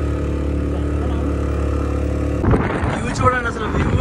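Motorcycle engine running steadily at cruising speed with an even hum. About two and a half seconds in, wind starts buffeting the microphone in rough gusts and a voice joins.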